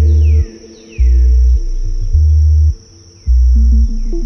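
Background music with a deep bass that comes in long pulses about once a second, under held synth-like tones and repeated falling glides higher up.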